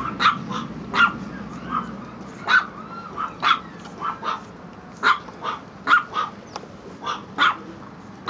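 Chihuahua puppy giving short, high-pitched yapping barks, about fourteen in irregular bursts, while pulling on its leash.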